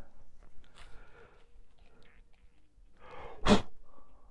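Faint handling clicks, then, about three and a half seconds in, one short, loud vocal burst from a man, like a sneeze.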